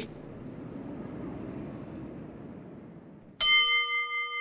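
Faint steady hiss, then near the end a single chime is struck and rings on with a clear bell-like tone, fading slowly.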